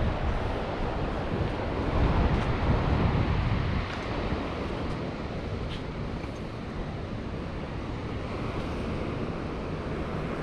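Wind buffeting the microphone over the steady wash of surf. It is gustier in the first few seconds, then settles.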